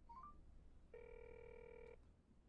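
Faint mobile phone alert: a quick three-note rising chirp, then a steady electronic tone about a second long.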